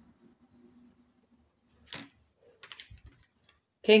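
Near silence with room tone, broken by a sharp click about two seconds in and a few faint ticks and a soft knock shortly after, small handling sounds; a woman's voice starts just before the end.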